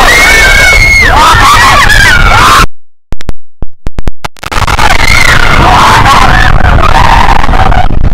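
Riders on a mine-train roller coaster screaming and whooping over the loud rumble of the train and wind on the microphone. About three seconds in, the sound cuts out for a second and a half, broken by a few crackles, then the screaming and rumble return.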